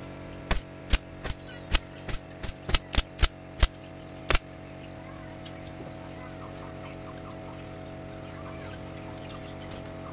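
Pneumatic upholstery staple gun firing staples through fabric into a wooden sofa frame: about eleven sharp shots at an uneven pace over some four seconds, then stopping.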